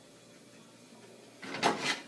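Cookware scraping and clattering briefly, starting about one and a half seconds in, as the meatballs are combined with the spaghetti.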